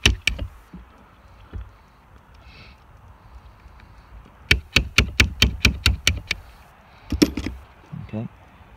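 Light hammer taps on a small pin used as a punch, driving the lock cylinder's retaining pin out of a VW T4 door handle. There are a few taps at the start, then a quick run of about ten even taps at roughly five a second around the middle, and a couple of sharper knocks near the end.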